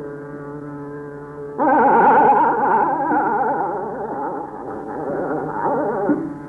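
A tanpura drone sounds alone, then about a second and a half in a male voice enters over it, singing a fast, wavering ornamented run of Raag Hem Kalyan. The recording is dull and muffled, with little above the midrange.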